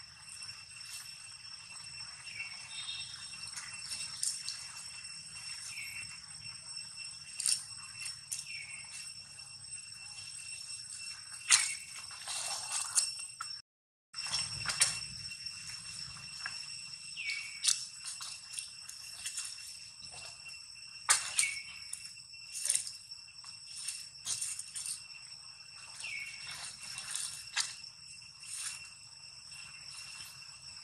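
Steady high-pitched insect drone of several pitches, with short squeaks that fall in pitch and a few sharp clicks scattered through it. All sound cuts out for about half a second near the middle.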